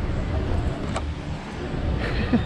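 Outdoor background noise: a steady low rumble with a sharp click about a second in.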